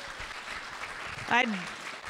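Audience applauding, a steady clapping, with a short spoken word heard over it a little past halfway.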